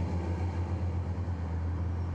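Several racing trucks' big diesel engines running flat out in a steady low drone, with a hiss of tyres and spray off a soaking wet track.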